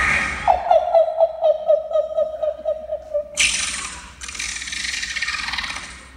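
Beatboxing: a pulsing vocal tone, about five pulses a second, sliding slightly down in pitch, then cut off by a sudden hissing noise a little past the middle that fades away near the end.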